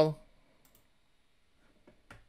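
The end of a spoken word, then near silence with a faint click or two from a computer mouse.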